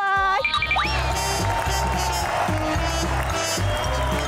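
Background music with a repeating bass line, with a short rising tone under a second in; a woman's voice ends a sentence at the very start.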